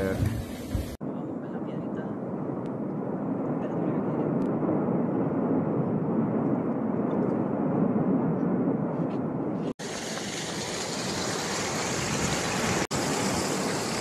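Steady rumbling roar of the erupting Cumbre Vieja volcano on La Palma, an even noise without pitch. About ten seconds in, after a cut, it gives way to a brighter, hissing roar.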